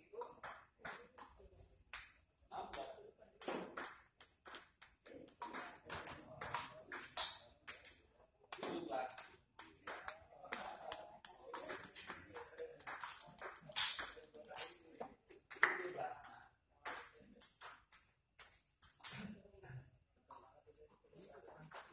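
Table tennis rally: a celluloid ping-pong ball clicking sharply off the paddles and the table, a quick series of hits, several a second, with a couple of short breaks between points.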